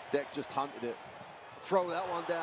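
A basketball dribbled on a hardwood court, a few bounces, under a broadcast commentator's voice.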